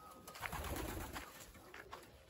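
Domestic pigeons cooing faintly, a low coo swelling about half a second in and fading after a second or so.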